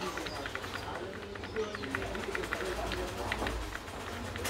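Computer keyboard keys tapped in quick, irregular succession over a low hum, with a faint murmur of voices behind.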